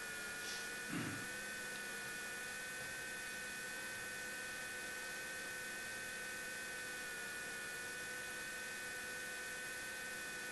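Steady electrical hum with a thin high whine over hiss, unchanging throughout. A brief low sound about a second in.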